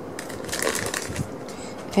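Paper sheets and plastic wrapping rustling and crinkling as they are handled, loudest from about half a second to a second in.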